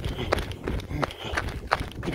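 A runner's sandals striking a dirt road in a steady rhythm of about three footfalls a second.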